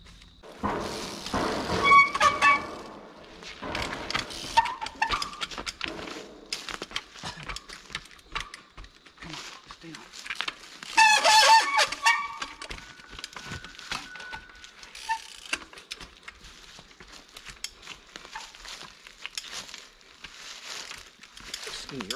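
Trials bikes being hopped and balanced on rock: repeated knocks, clicks and scrapes of tyres and frames on stone. Two louder bursts of short, high squeals come about two seconds in and again about eleven seconds in.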